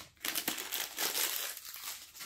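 Clear plastic shrink wrap from an iPhone box crinkling and crackling as it is crumpled in the hands.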